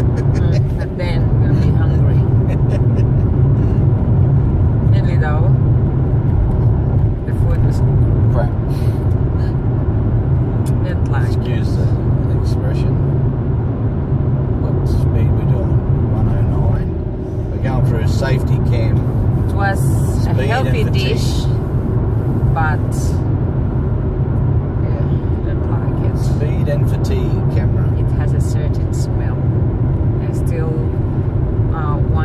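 Steady road and engine rumble inside the cabin of a moving car, with voices talking now and then.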